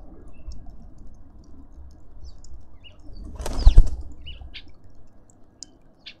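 Bird wings flapping at a garden feeder: one loud burst of wingbeats a little past halfway as birds take off, with faint short high chirps around it.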